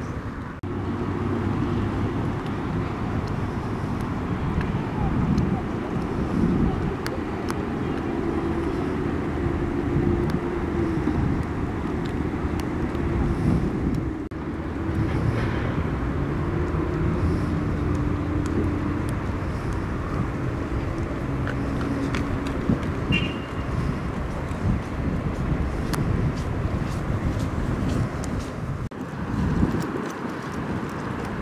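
Outdoor city ambience: a steady hum of traffic with indistinct distant voices.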